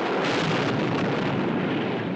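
A film sound-effect explosion: a loud, noisy blast that comes in suddenly and fades slowly.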